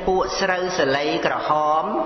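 A man's voice chanting in a slow, drawn-out intonation, holding a long steady note near the end: a chanted verse within a Khmer Buddhist dhamma talk.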